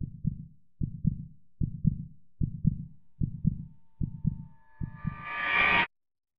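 Heartbeat sound effect: a low double thump repeating about every 0.8 s. Over the last second and a half a swell of noise and tone rises beneath it, then everything cuts off suddenly.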